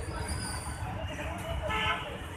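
Steady street-traffic rumble with faint voices, and a short vehicle horn toot near the end.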